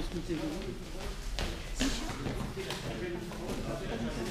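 Indistinct talking echoing in a large sports hall, with two short sharp knocks about a second and a half in.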